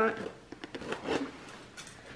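Scissors working at the tape and cardboard of a Priority Mail box: a few faint clicks, snips and scrapes.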